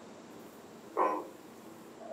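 One short vocal sound about a second in, over quiet room tone.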